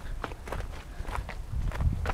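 Footsteps on gravelly dirt ground, several irregular steps, over a steady low rumble.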